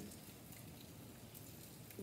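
Faint, steady rain falling outside, an even hiss with a few faint drop ticks.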